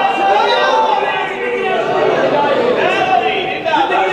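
Only speech: a man's voice declaiming over microphones.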